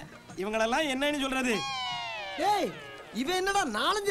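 A man's voice in exaggerated comic vocalising: a short spoken phrase, then a long drawn-out cry that falls in pitch about one and a half seconds in, followed by short swooping vocal sounds.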